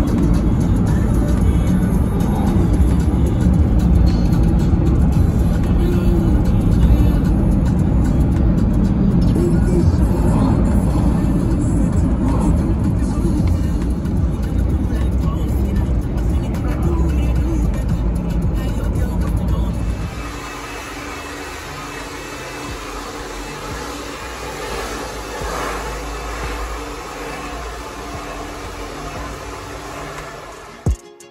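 Car cabin noise while driving, a loud low rumble, under background music. About twenty seconds in it cuts to a quieter, steady rushing sound from a handheld hair dryer blowing.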